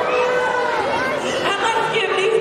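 People talking and chattering in an audience, several voices overlapping.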